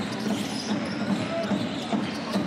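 A basketball being dribbled on a hardwood court, a run of repeated bounces, with a few short sneaker squeaks.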